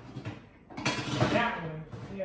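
Metal oven rack scraping and clattering against the oven's side supports as it is moved to another notch, starting suddenly about a second in.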